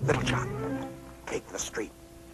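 Background music holding steady tones, with short wailing cries over it: one at the start and a quick run of three near the end.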